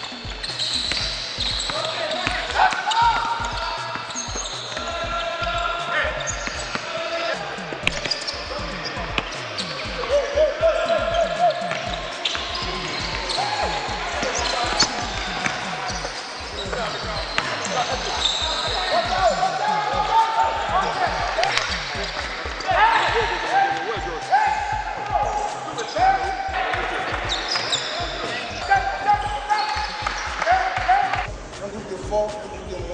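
Basketballs bouncing many times over on an indoor court floor during dribbling drills, with voices in the hall.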